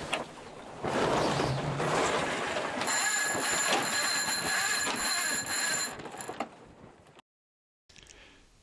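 Sheet winch on a sailing trimaran being worked during a tack: a rasping run of winch-and-line noise, with a steady ringing whine through the middle few seconds. It dies away about a second before the end.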